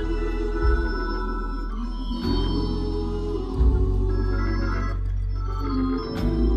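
Two-manual organ playing sustained gospel chords over deep held bass notes, the bass changing every second or so.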